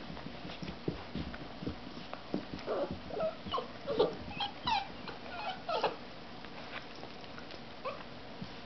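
Silver Labrador puppies playing: soft knocks and scuffles at first, then a run of short whimpers and yips from about two and a half to six seconds in.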